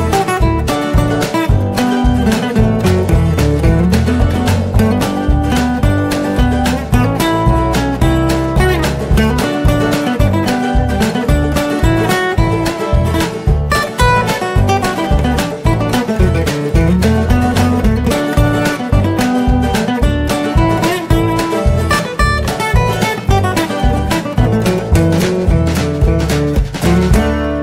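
Instrumental background music with a quick run of plucked string notes, likely acoustic guitar, over a moving bass line, playing without a break.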